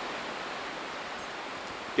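Wind rushing through pine trees and brush: a steady, even hiss with no distinct events.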